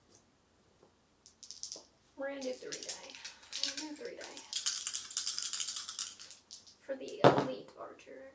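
Three six-sided dice rattling as they are shaken for several seconds, then tossed onto the gaming mat with a single sharp clatter about seven seconds in.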